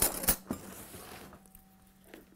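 A metal spoon clinking against bowls and dishes, three quick sharp clinks in the first half-second followed by softer handling noise, over a faint steady hum.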